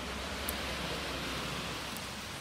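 Steady hiss of cars passing on a wet street, with a brief tick about half a second in.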